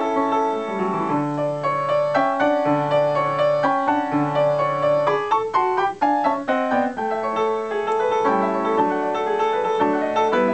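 A c.1978 Yamaha U3 52-inch upright piano being played: held chords over a low note sounded three times in the first half, then a quicker run of short notes around the middle.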